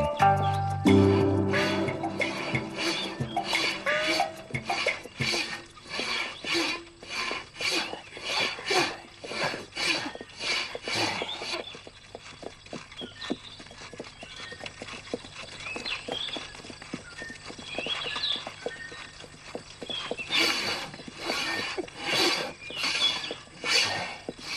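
Horses' hooves clip-clopping at a walk, about two strikes a second, after a music cue that ends in the first second or two. The hoofbeats grow faint through the middle and come back louder near the end.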